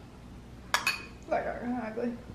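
A metal spoon clinks twice in quick succession against a ceramic dish, about three-quarters of a second in.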